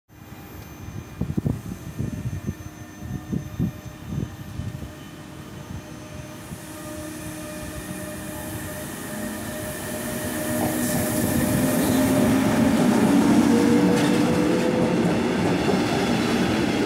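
Koleje Mazowieckie electric locomotive and double-deck passenger coaches passing close by, their rumble on the rails growing steadily louder as the train approaches, with a steady whine. A few dull low thumps in the first few seconds.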